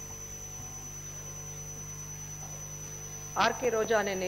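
Steady electrical hum with a thin high whine above it. About three and a half seconds in, a woman starts speaking into a microphone.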